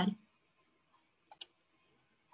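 Two quick computer mouse clicks close together, a little over a second in.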